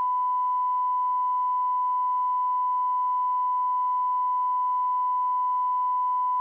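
Broadcast line-up test tone: a single steady pure tone with faint overtones, part of a looping programme signal sent while the committee feed is on a break.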